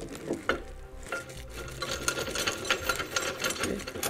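Hands working the mounting hardware of a steel tube step: a few knocks, then a few seconds of fast, fine clicking and rustling as the bolt is threaded through the bracket into the step's fitting and the bar is handled in its plastic wrap.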